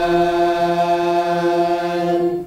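A man's voice chanting Quranic recitation in the nahawand melody, holding one long note at a steady pitch.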